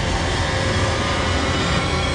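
Film soundtrack: a loud, steady, dense rumble with sustained tones layered over it, part of a dark, ominous score.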